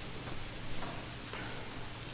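A few faint, light clicks, about half a second apart, over the quiet hum of the church.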